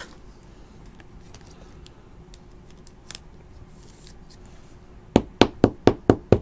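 A few faint clicks over a quiet room, then near the end a quick run of about six sharp knocks on the tabletop, about four a second.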